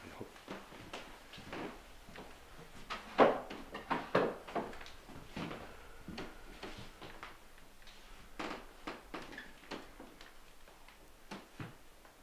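Scattered light knocks, clicks and rustles of objects being handled. Two louder knocks come about three and four seconds in.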